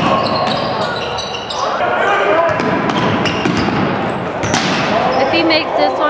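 A basketball being dribbled on a gym's hardwood floor, with sharp knocks and short high squeaks from the play. Players and spectators call out, echoing in the large hall.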